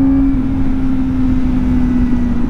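Motorcycle engine running at road speed from the rider's seat, with heavy wind and road noise. Its steady note thins out shortly after the start as the bike slows.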